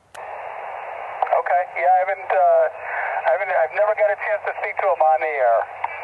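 A man's voice received over single-sideband on 10 meters through a Yaesu FT-818's small speaker: thin, narrow-band speech over a steady hiss, which comes up just after the start with the voice beginning about a second in.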